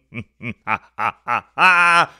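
A man laughing: a string of short 'ha' bursts, about three a second, ending in one drawn-out laugh near the end.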